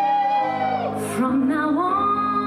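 A singing voice over musical accompaniment: a long held note that slides down about a second in, followed by a new phrase starting lower and rising.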